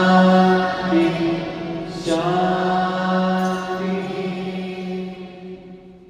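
Mantra chanting with long held notes on a steady pitch, a new syllable coming in about two seconds in, then fading out toward the end.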